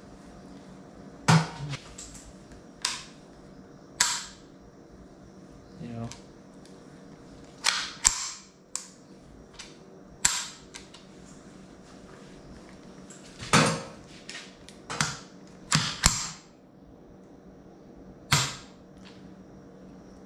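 Sharp metallic clicks from a Ruger 10/22's bolt and trigger being worked by hand, the rifle freshly fitted with a BX trigger: about a dozen separate clicks at irregular intervals, some in quick pairs.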